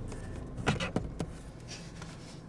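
A few quick light clicks and knocks of a phone and hand against the hard plastic of a dashboard storage pocket, bunched around the first second, over a low steady hum.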